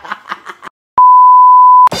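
A censor bleep: one steady, loud beep at a single pitch, lasting just under a second and starting about halfway in. Before it, laughing speech trails off into a moment of dead silence.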